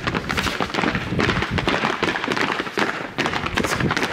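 Many footsteps of a group walking together on paving: a dense, irregular clatter of sharp steps, with football cleats clacking on the hard ground.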